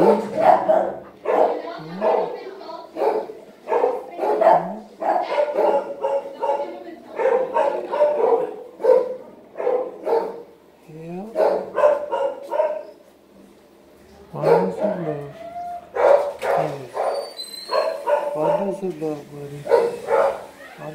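A dog vocalizing with barks, yips and whines in close, repeated runs that stop briefly about two-thirds of the way through.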